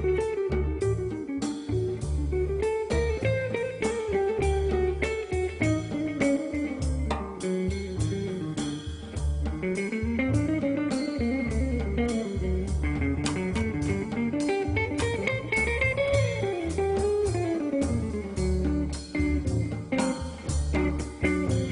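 Instrumental passage of a jazz-folk quartet: a guitar plays a quick, winding single-note line over plucked double bass notes.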